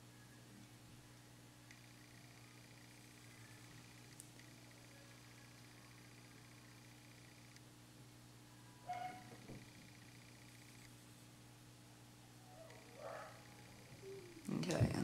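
Near silence: room tone with a steady low hum, broken by one short, faint sound about nine seconds in.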